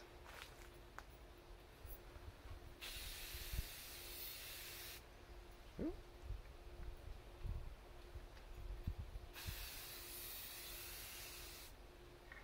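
Aerosol spray paint can spraying in two steady hissing bursts of about two seconds each, one about three seconds in and one near the end: two vertical passes of a light second coat.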